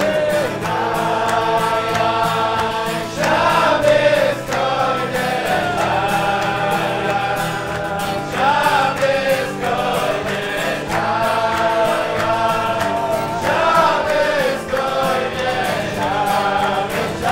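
A group of men singing a Chassidic niggun together, accompanied by acoustic guitar. The melody repeats in phrases, each rising to a louder, higher note about every five seconds.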